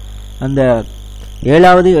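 Steady low electrical mains hum on the recording, under two short drawn-out sounds from a man's voice.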